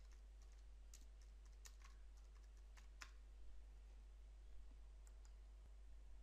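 A few faint, scattered key clicks of computer keyboard typing over near-silent room tone.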